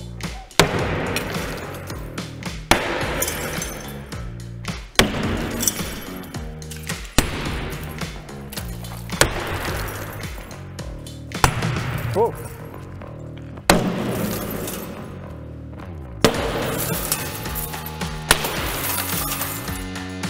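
Hammer and crowbar blows against laminated window glass in insulated glass units, about nine sharp impacts one every two seconds or so, each with a clink and crackle of cracking glass. The laminated panes crack but hold, and the tools do not break through. Background music plays underneath.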